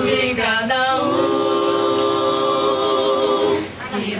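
Small mixed vocal group of young men and women singing a cappella in harmony, with no instruments. After a shift of notes in the first second, the voices hold a long chord for about two and a half seconds, then break off briefly just before the end.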